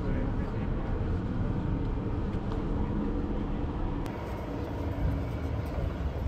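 Outdoor city ambience: a steady low traffic rumble with a faint engine hum, and people's voices in the background.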